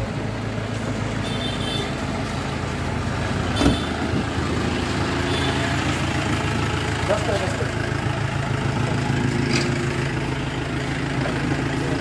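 A vehicle engine idling with a steady low hum, and a single thump about three and a half seconds in.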